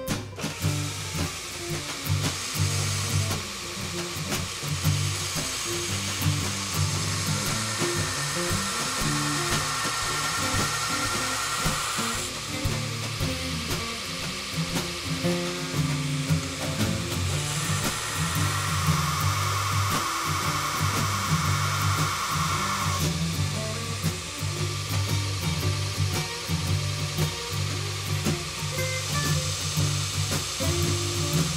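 Belt grinder grinding the point of a hardened steel file blank on a coarse 36-grit ceramic belt: two long grinding passes, the first from a few seconds in to about twelve seconds, the second from about eighteen to twenty-three seconds. Background music plays throughout.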